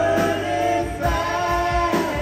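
Live rock band playing electric guitars, bass and drums with singing, the voice holding two long notes, one after the other.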